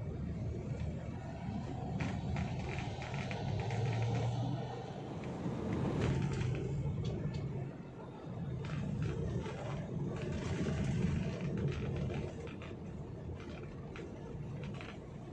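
Low, steady rumble of a car's engine and tyres heard from inside the cabin while driving, swelling and easing with the traffic.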